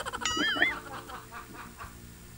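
Laughter heard over a video call, with a short, high, wavering squeal early on, about a quarter of a second in.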